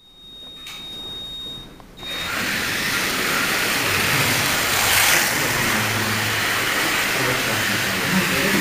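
A steady high electronic beep of about two seconds, broken briefly near its end, then the small electric motors of pre-1970 1/32-scale slot cars whine loudly and steadily as the cars set off and race round the track, swelling once about five seconds in.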